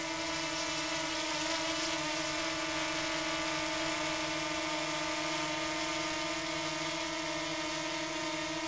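DJI Mini 4K drone hovering, its four propellers giving a steady whine made of several held tones. The noise was measured at about 77 dB, quieter than the Neo, HoverAir X1 and Avata drones it is compared with.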